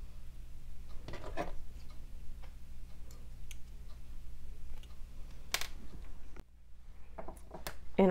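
Scattered light clicks and taps of a metal wick tab and pliers as a cotton candle wick is crimped into the tab, over a steady low hum that cuts out about six seconds in.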